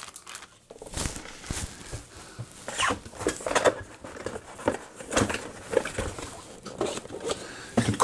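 Irregular rustling and crinkling of a clear plastic bag wrapped around a carry case, with a cardboard box being handled and set down.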